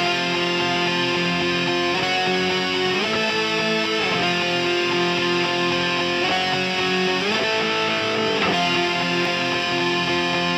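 Distorted electric guitar playing slow, held chords, changing every second or so, with no drums.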